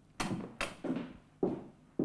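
Footsteps of a man in boots striding quickly away across a hard floor: about five heavy steps, the first two the loudest.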